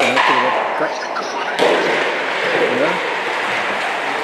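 A stock shot down the court: its sole sliding along the playing surface. A steady scraping rush starts suddenly about a second and a half in, under men's voices talking in the hall.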